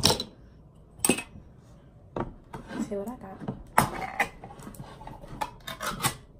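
Metal clinks and knocks of a bare tin can and cutlery being handled on a table, about half a dozen sharp strikes scattered through.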